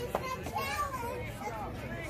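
Several girls' high voices calling out over one another, with one brief sharp click just after the start.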